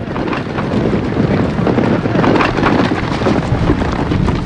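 Many cavalry horses galloping past together: a steady, dense drumming of hooves.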